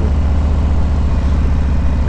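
Motorcycle engine running steadily while the bike cruises, a low, even throb of rapid firing pulses.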